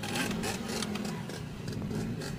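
Faint, steady dirt bike engine sound with a low hum and light rasping.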